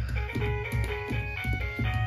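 Electronic nursery tune from a baby's kick-and-play piano gym: a simple melody of short notes over a low beat.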